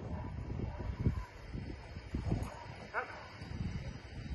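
Low thuds and rustling of a dog and handler scuffling on grass during a tug game, with one short rising yelp from the dog about three seconds in.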